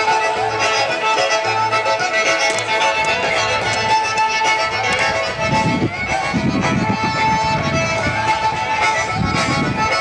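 Live acoustic bluegrass music with long held notes, picked up by a camcorder mic, with bursts of low rumble on the microphone about halfway through and again near the end.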